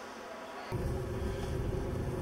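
Faint hiss of a quiet hall, then, under a second in, an abrupt change to the steady low rumble of a car's engine and tyres heard from inside the cabin while driving.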